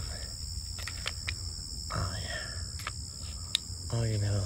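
Steady high-pitched chirring of insects, with a few faint clicks and rustles from a sealed plastic snack cup being picked open by hand.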